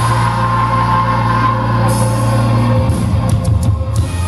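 Rock band playing live, heard from the audience: electric guitars and bass hold a ringing chord, then a few sharp drum hits come near the end.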